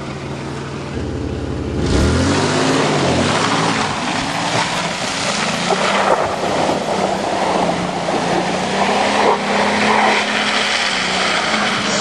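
Dodge Caravan minivan's engine revving up about two seconds in and held at high revs as it drives through mud, with a loud wash of spinning tyres and mud spray over the steady engine drone.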